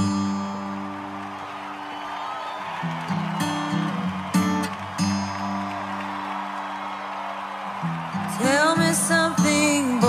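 Music: strummed acoustic guitar chords ringing out as an accompaniment, struck again several times, and a woman's singing voice comes in about eight seconds in.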